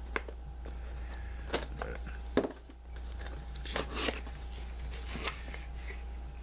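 Cardboard box being slit open with a sharp blade: short scraping and rustling strokes through tape and cardboard, with one sharp click about two and a half seconds in.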